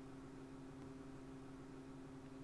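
Quiet room tone: a faint steady low hum with light hiss.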